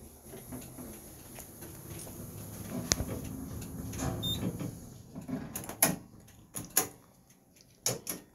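Modded OTIS bottom-driven lift car travelling down with a low rumble that swells through the first half, then several sharp clicks near the end.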